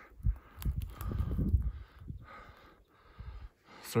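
Footsteps and rustling of a person pushing on foot through sagebrush and juniper scrub, with uneven low thuds. A soft hissing comes and goes in stretches of about a second, like heavy breathing.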